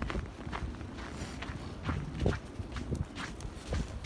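Footsteps on a snow-covered sidewalk as a person walks a husky on a leash, about two or three irregular steps a second.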